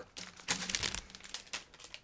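Plastic bag holding a model kit's sprues crinkling and crackling irregularly as it is handled, just after being cut open.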